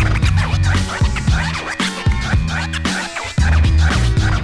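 Hip hop beat with DJ turntable scratching: quick back-and-forth record scratches over a steady bass line.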